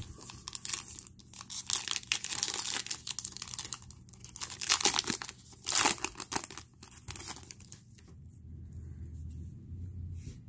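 Foil trading-card pack being torn open and its wrapper crinkled as the cards are slid out: a run of crackling and tearing, loudest about five to six seconds in, that dies down after about seven seconds.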